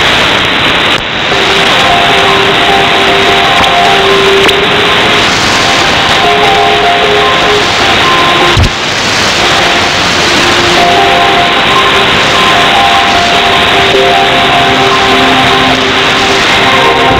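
Music received over an AM shortwave broadcast, its held notes sitting in a heavy, steady hiss of static with a narrow, muffled sound. There is a brief dip in the signal about a second in and another one about halfway through.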